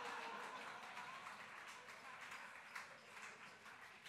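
Audience laughing and clapping after a joke, fading away over the few seconds.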